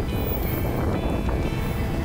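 Steady wind rumble on a bike-mounted camera's microphone while riding a road bike in a pack, with background music underneath.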